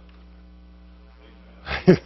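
Low, steady electrical mains hum, with a man saying "Yes" near the end.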